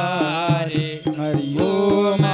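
Voices singing a Hindu devotional aarti to Shiva, with a dholak drum keeping a steady beat of about three to four strokes a second. The beat thins out briefly in the middle.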